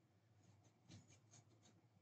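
Near silence, with a few faint, short scratching rustles from fingers scratching hair close to a headset microphone.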